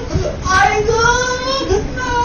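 A young child crying in long, drawn-out wails: a brief catch of breath near the start, then one long held high-pitched wail.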